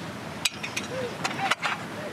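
A handful of sharp clicks and knocks in quick succession as the side hatch of a Blue Origin New Shepard crew capsule is unlatched and pulled open.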